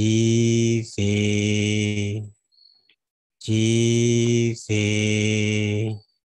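A man's deep voice chanting long, steady held notes. They come in two pairs, with a pause of about a second between the pairs.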